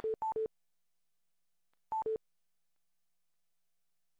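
Electronic two-note beeps from the webinar's audio system, each a higher tone dropping to one about an octave lower: two pairs in quick succession at the start and one more pair about two seconds in, then the sound cuts out to silence. Coming right after the host's goodbye, they mark the webinar broadcast being closed.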